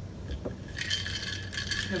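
Ice cubes clinking and rattling in a glass of iced drink as it is picked up, with a bright ringing clatter starting a little under a second in.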